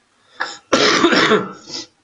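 A man coughing: a short catch about half a second in, then one loud, harsh cough lasting most of a second.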